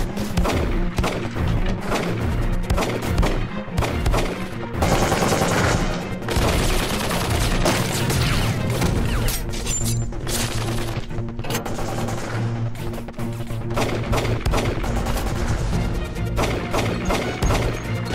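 Repeated gunshots in rapid bursts, with hits and crashes, over a dramatic music score with a steady low drone.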